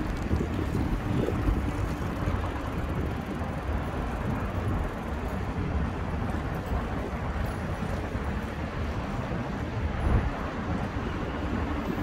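Wind buffeting the microphone of a camera on a moving bicycle: a steady low rush with no breaks.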